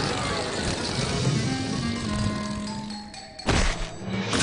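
Cartoon background music whose notes thin out and quieten toward the end, then one sudden loud impact sound effect about three and a half seconds in.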